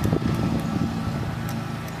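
A steady low mechanical hum, with wind rumbling on the microphone in the first half second and a few faint clicks.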